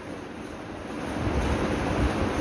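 Steady rushing background noise with a low rumble that builds about a second in, like moving air on the microphone.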